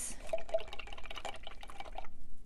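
Paintbrush swirled in a glass jar of rinse water, with quick, irregular small clicks as the brush knocks against the glass.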